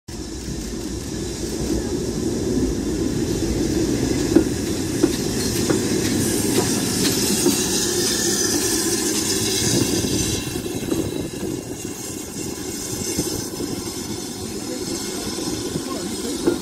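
BR Standard Class 4 tank steam locomotive rolling slowly past with a steady hiss of steam, followed by its coaches rumbling by. Wheels click now and then over the rail joints. The hiss dies away about ten seconds in.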